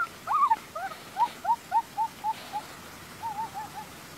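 A bird calling: a run of short hooting notes, about four a second, that fades out, then a quick group of four hoots near the end.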